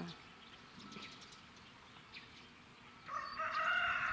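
One long call from a farmyard bird, starting about three seconds in, over a quiet outdoor background.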